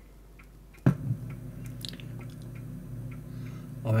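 A sharp click about a second in, then a steady electrical hum of several low tones from a tape digitizer's circuit board being probed with metal tweezers. This is the hum the owner suspects comes from the board's chip.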